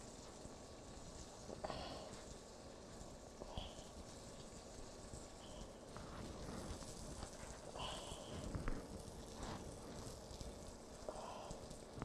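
Faint sizzle of floured, egg-washed chicken breasts frying in butter in a fry pan, with a few soft taps and clicks from handling the chicken.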